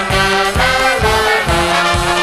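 Instrumental ending of a French chanson: a swing-style band with brass holding long notes over a steady beat.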